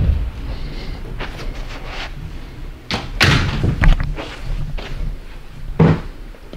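Several dull thumps and knocks, spaced irregularly, the loudest about three seconds in.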